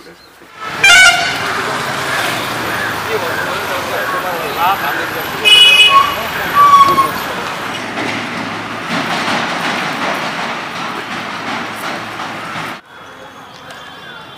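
Busy street traffic with vehicle horns honking: a short toot about a second in and another about five and a half seconds in, among people talking. The sound drops suddenly near the end.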